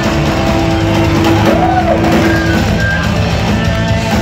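Heavy metal band playing live: distorted electric guitars over bass and drums, with one long held guitar note through the first half and a note that bends up and back down about halfway through.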